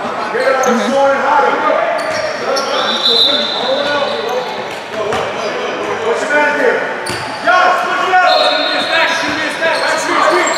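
Basketball bouncing on the court during play, with players' and onlookers' voices echoing around a large gym.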